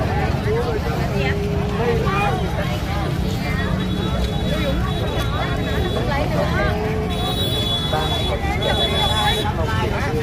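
Street crowd babble: many people talking at once, no single voice standing out, over a steady low rumble. A thin high steady tone comes in about three and a half seconds in and cuts in and out toward the end.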